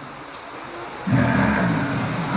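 A man's voice through a handheld microphone and hall loudspeakers, coming in about a second in after a moment of quieter room noise. It is drawn out in a half-sung, chant-like way.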